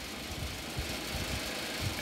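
Steady background noise: an even hiss with a faint low rumble and a few soft low thumps, no clear source.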